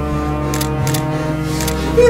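Phone camera shutter clicking three times, two in quick succession about half a second in and one near the end, over steady background music.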